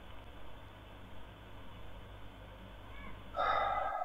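Faint steady hiss and low hum of an open telephone line after a call has ended, cutting off abruptly at the end. Shortly before the cutoff comes a brief breathy sound.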